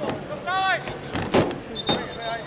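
Outdoor football pitch sounds: a man's short shout, then two sharp knocks, the second near the end, and a short high steady whistle blast starting near the end, in keeping with a referee's whistle.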